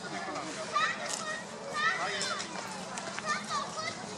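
Children's voices: high-pitched calls and chatter from children playing among a crowd, with several short rising and falling cries during the stretch.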